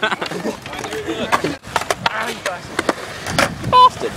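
Skateboards clacking and knocking in a string of sharp hits, mixed with the voices of a group of young people, and a short pitched call near the end.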